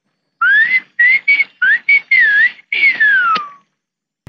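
A person whistling a short tune: a run of quick notes that rise and dip, then a long note sliding downward.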